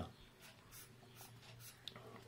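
Faint scratching of a marker pen on paper: a few short strokes as words are underlined and a point on a graph is circled.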